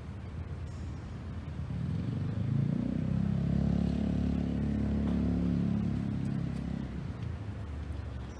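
A motor vehicle's engine passing by: a low hum that swells for a few seconds and then fades away.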